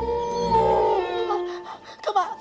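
A long, drawn-out howling cry that holds a steady pitch and fades out about a second and a half in.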